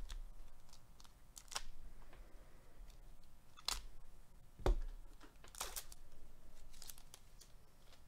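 A foil trading-card pack from 2021 Panini Absolute Football being torn open by gloved hands: several short crinkles and rips, the loudest about four and a half seconds in.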